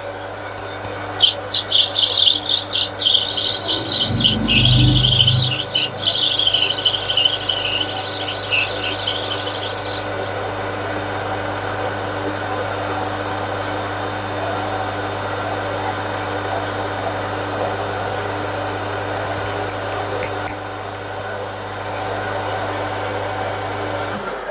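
Metal lathe running while the cutting tool takes a cut along a brass bar, with a scratchy rasp over the motor's steady hum for about the first ten seconds and a dull thump partway through. After the cut the lathe runs on with only its hum and a few light clicks.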